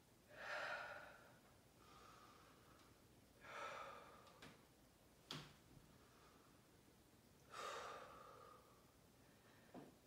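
A woman breathing out audibly three times, slow faint exhales about three and a half seconds apart, with a single sharp click about five seconds in.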